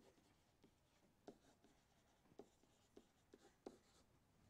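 Faint taps and short scratches of a pen stylus writing on a digital screen, about half a dozen soft ticks in a near-silent room.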